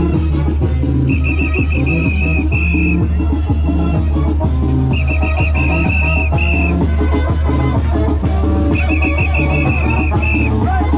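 Loud festive dance music with a heavy bass and a steady beat. Over it, a shrill trilling whistle sounds in three spells of about two seconds each.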